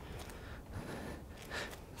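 Faint, heavy breathing from exertion, with a slightly louder breath about one and a half seconds in.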